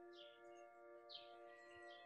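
Faint soft background music, a sustained chord held steady, with a few faint bird chirps over it.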